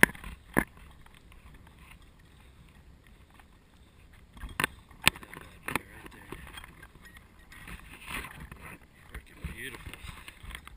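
Handling sounds from unhooking a trout in a landing net: a handful of sharp clicks and knocks, two of them early and three close together about halfway, over a faint wash of moving water.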